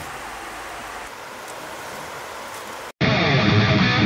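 Steady sizzling hiss of burgers and zucchini cooking on a portable gas grill. At about three seconds it cuts off abruptly and loud strummed guitar music starts.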